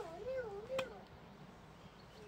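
A small mattock striking stony soil once, about a second in. It comes under a drawn-out, wavering high call that rises and falls twice over the first second and then stops.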